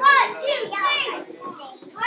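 Children's high-pitched voices calling out and chattering, loudest right at the start.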